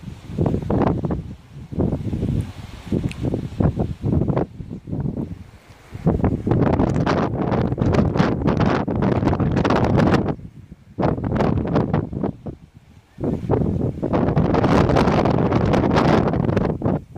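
Wind buffeting the microphone in irregular gusts, loud and rumbling, dropping away briefly about five seconds in and again for a couple of seconds after the ten-second mark.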